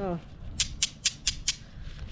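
A pair of egg-shaped "singing" magnets snapping together in the hand. About six quick, high-pitched chirps like a cicada come about half a second to a second and a half in.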